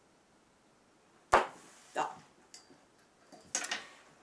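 A quiet pause broken by one sharp click about a third of the way in, then a short spoken word and a few soft breath or mouth sounds near the end.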